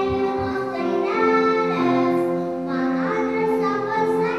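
A small group of young children singing a song together, holding long sung notes.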